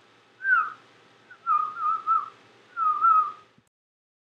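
A short whistled tune in three phrases: a brief falling note, then a run of wavering notes, then a last swelling note, stopping cleanly just before the end.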